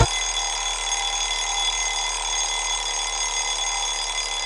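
Alarm clock ringing continuously at an even level, a bright steady sound made of several fixed high tones.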